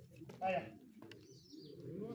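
Low murmur of voices with a short louder call about half a second in, and a brief high bird chirp a little past the middle.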